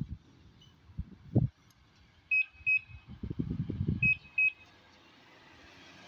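A motorcycle's alarm chirping in two pairs of short high beeps, a second and a half apart, as its remote fob is pressed. A couple of dull thumps come before the first pair.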